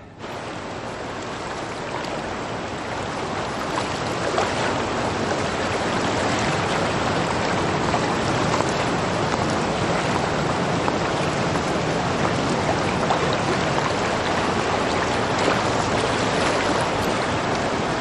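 Sea surf washing in a steady rush, swelling over the first few seconds and then holding even.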